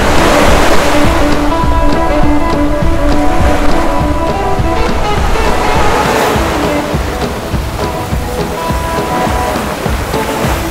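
Background music with sustained notes over the rush of water and wind from a sailboat running fast through steep waves, the water noise swelling twice and the wind buffeting the microphone throughout.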